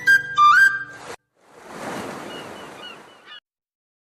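Cartoon soundtrack. A short music sting ends on a note that slides upward. After a brief gap comes a swell of ocean surf with a few faint, high, whistle-like chirps, which cuts off suddenly.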